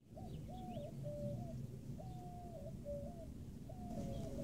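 A dove cooing: a short phrase of a few low, steady notes repeated about every two seconds, over a low background rumble.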